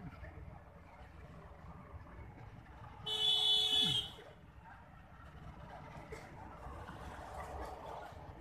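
A vehicle horn sounds once for about a second, about three seconds in, over a low steady rumble.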